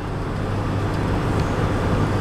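Steady road noise inside a car cruising on the highway: a low, even hum of engine and tyres.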